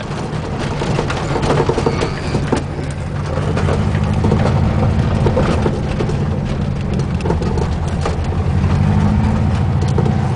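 1974 Volkswagen Super Beetle's air-cooled flat-four engine running steadily in first gear, heard from inside the cabin while driving, with scattered rattles and clicks over the low engine hum. It gets slightly louder about four seconds in.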